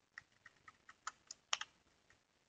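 Typing on a computer keyboard: a quick run of about ten light, separate keystrokes, the loudest pair about one and a half seconds in.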